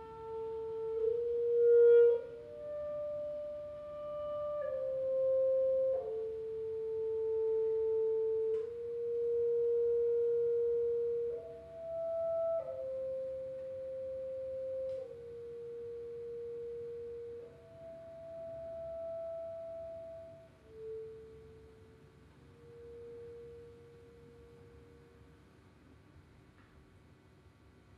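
Solo clarinet playing a slow line of about a dozen long, soft held notes, one at a time, moving by small steps. The notes grow softer in the last few seconds and die away near the end.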